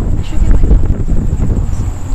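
Wind buffeting the microphone: a loud, uneven low rumble with gusts rising and falling.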